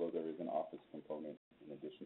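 A man's voice speaking, lecture-style, narrow and thin as over a phone or webinar line. The sound drops out briefly about one and a half seconds in.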